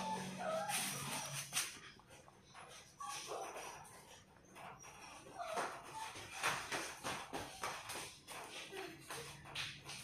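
Rabbits chewing pellets from a clay bowl: an irregular run of crisp crunches and clicks.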